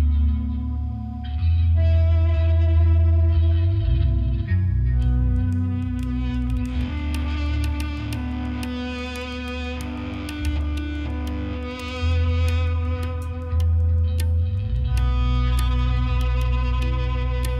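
A live band playing instrumental rock: electric guitar through effects pedals over deep held bass notes. Drums with cymbal hits come in about five seconds in.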